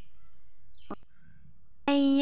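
A brief short tone about halfway through, then near the end a loud sustained musical note begins, held at one steady pitch.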